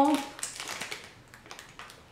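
The tail of a spoken word at the start, then faint scattered ticks and crinkles of a plastic candy wrapper being handled as a lollipop is unwrapped.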